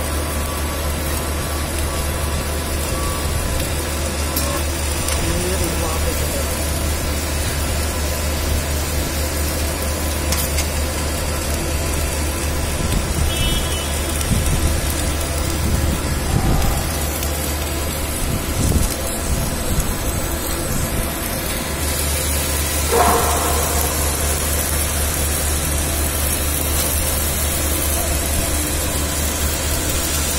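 Steady low machine hum from a submerged arc welding station, with a few brief low rumbles in the middle.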